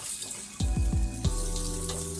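Kohlrabi cubes and green peas sizzling in hot oil in a non-stick frying pan, with a few knocks and scrapes of a spatula stirring them. Soft background music with held notes comes in about half a second in.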